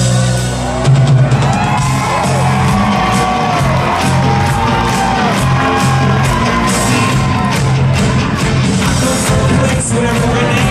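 Live rock band playing full-out in a large hall: bass, drums and electric guitars, with long wailing notes that bend up and down over the top and whoops from the crowd.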